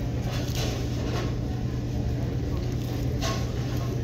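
Steady low hum of a fast-food dining room, with three brief rustles of paper as a breakfast sandwich is handled and eaten over its wrapper.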